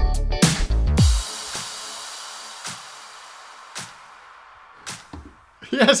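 Yamaha PSR-SX900 arranger keyboard playing a style with a drum beat and bass, which stops about a second in on a final chord. The chord rings out and fades away slowly over the next few seconds.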